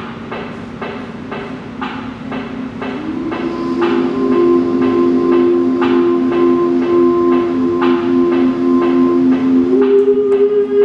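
Improvised music on an amplified zither-type string instrument played through a guitar amplifier: evenly repeated strikes, about three a second, over held tones. The held tones step up in pitch about three seconds in, and the sound grows louder from there.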